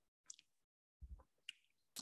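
Near silence with a few faint short clicks, spread over the second half of the pause.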